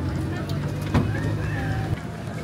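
A vehicle engine running with a steady low hum, a single sharp click about a second in, and faint voices over it.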